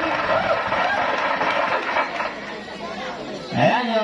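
Spectator chatter at an outdoor basketball game: many voices talking at once. The chatter thins about two seconds in, and a single voice rises near the end.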